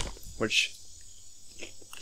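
Crickets chirping steadily and faintly, with a brief spoken word in between.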